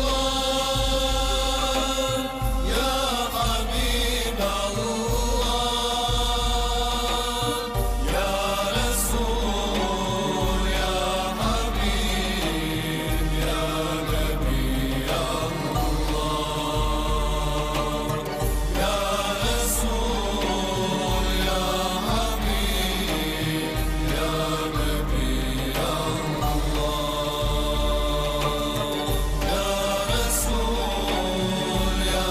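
A choir singing an Islamic devotional song (ilahija) in long, held chords that change slowly, over a deep bass pulse about once a second.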